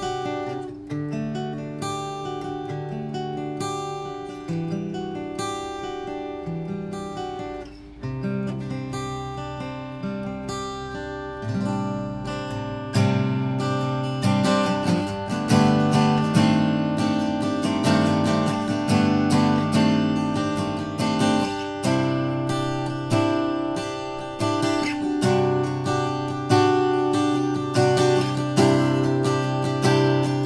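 Maestro Victoria ME acoustic guitar, a triple-O cutaway with Macassar ebony back and sides and an Adirondack spruce top, played solo as a melodic piece with bass notes under the tune. About 13 seconds in the playing grows louder and fuller, with more strummed chords.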